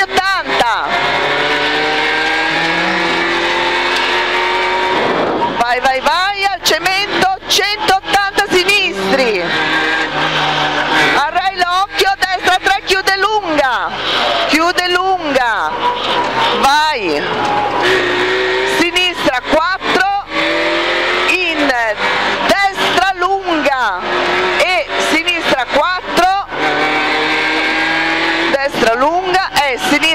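Rover 216 rally car's 1.6-litre engine at full throttle on a stage, heard from inside the cabin: revs climb in long pulls through each gear and drop sharply at the gearchanges.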